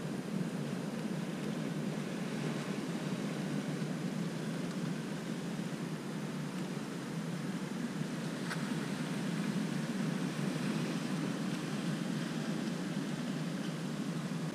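A steady, even rushing noise of the outdoor shore with no distinct events, and one faint click about eight and a half seconds in.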